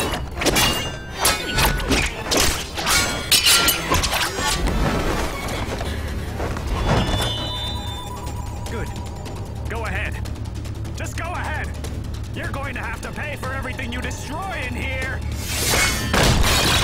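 Fight-scene sound effects of a rapid series of sharp hits and crashes, heard over dramatic score music during the first few seconds. After that a low, steady musical drone carries on under a man's voice.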